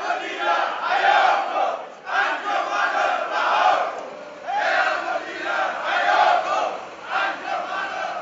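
A crowd of men chanting a protest slogan in unison, loudly, the phrase repeated about every two seconds.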